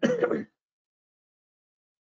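A man's short cough, about half a second long, right at the start.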